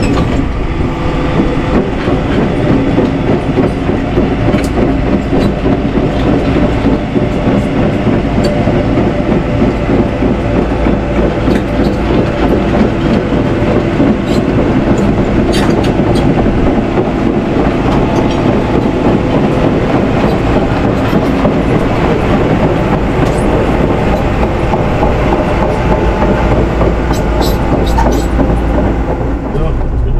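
Crawler excavator driving off a low-bed trailer and across a gravel yard: the diesel engine runs steadily under the continuous clatter of the steel tracks, with scattered clanks.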